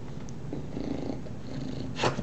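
Two English bulldogs growling at each other in rough play, a low continuous rumble that swells twice.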